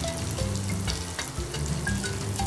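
Coil of thin maida dough strands deep-frying in moderately hot oil in a kadai, a steady sizzle, while a fork stirs and turns it in the oil.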